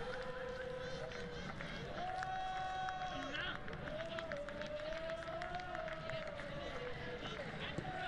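Faint football-ground ambience picked up by the pitch-side microphones: distant voices with a few long, drawn-out held calls that rise and fall slowly, over a steady background hum.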